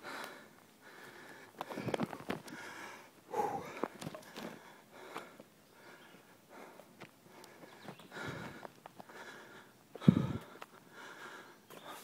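People breathing hard after a steep uphill climb, with irregular, uneven breaths. A short, louder low sound comes about ten seconds in.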